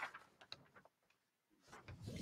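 Near silence: room tone, with one faint short tick about half a second in.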